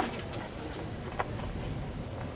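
Handheld microphone handling noise: a sharp knock at the start and a smaller one about a second later, over a steady low rumble of street noise.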